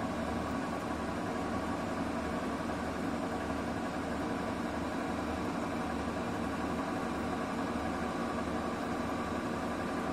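Bosch Serie 8 front-loading washing machine running steadily in its final rinse-and-spin stage, the drum turning with water inside: a continuous motor and drum hum with a low, uneven throb underneath.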